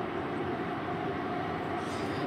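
Steady mechanical background noise with a faint, unchanging hum.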